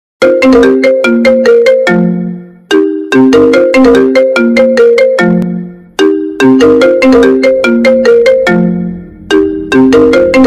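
iPhone ringtone: a marimba-like melody of quick struck notes ending on a held low note, repeating about every three seconds. It is bass-boosted, with a low rumble building under the melody from about six seconds in.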